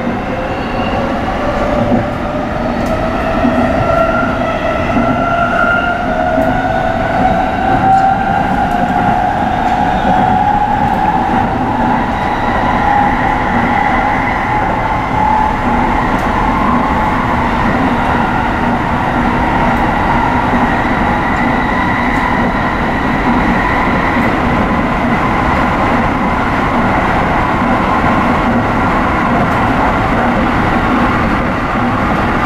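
Tsukuba Express electric train pulling away and accelerating, heard from inside the cab: the traction motors' whine climbs in pitch over roughly the first ten seconds, then settles into steady running at speed with continuous wheel and rail rumble.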